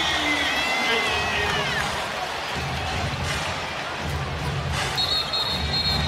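Arena crowd noise during live basketball play. Sneakers squeak on the hardwood court in the first two seconds, and near the end a referee's whistle blows steadily for about a second as an offensive foul is called.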